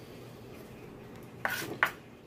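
A knife paring the skin off a zucchini on a plastic cutting board, with two sharp clicks of the blade on the board in the second half.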